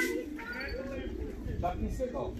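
Pigeons cooing faintly, with a few short bird calls around them.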